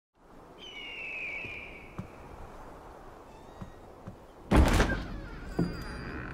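A high, drawn-out creak about half a second in, then a loud thunk about four and a half seconds in as a wooden door swings open, followed by a single heavy step on a wooden floor.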